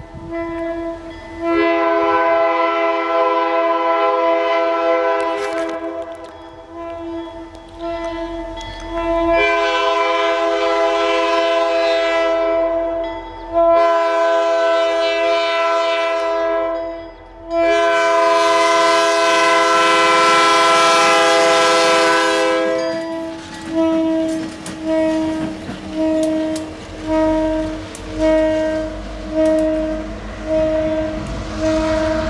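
CP diesel locomotive's air horn, reported broken by the crew, sounding four long blasts and then a string of short honks about one a second, with the rumble of the approaching train rising near the end.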